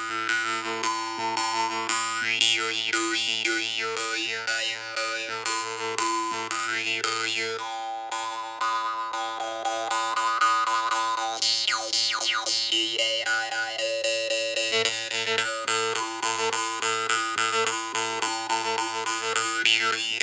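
Gimadiev 'Indigo' jaw harp (vargan) played without its magnet fitted: a steady twangy drone from the plucked reed in a quick even rhythm, with overtones sweeping up and down as the mouth changes shape.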